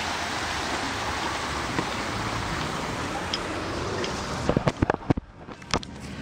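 A steady rushing noise, then a cluster of sharp knocks and bumps over the last second and a half as the camera is handled against a stone wall.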